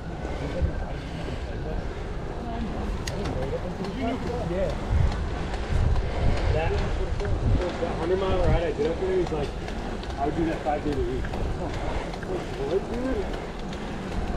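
Wind noise on the microphone of a camera riding on a moving bicycle, stronger for a few seconds in the middle, with indistinct talking from the riders.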